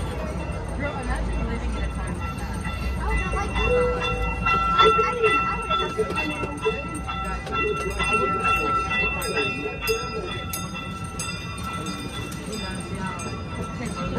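Small amusement-park train running, with a steady low rumble and a run of sharp clicks in the second half. A steady high-pitched whine is heard for about five seconds in the middle, with indistinct voices underneath.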